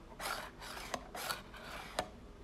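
Hands handling a cardboard eyelash packaging box: two short rasping rubs about a second apart, with a small click between them and a sharper click at the end.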